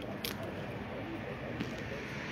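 Outdoor hubbub with faint, indistinct voices in the background and two short clicks, one just after the start and one past the middle.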